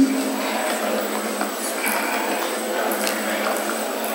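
Lecture-hall room tone through the microphone and sound system: a steady hum and hiss with a faint indistinct murmur.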